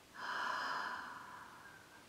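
A long breathy "haa" exhale blown onto a stethoscope's chest piece to warm it, strong at first and then fading away over about a second and a half.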